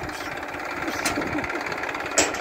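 Tractor diesel engine idling steadily, with a single sharp click about a second in.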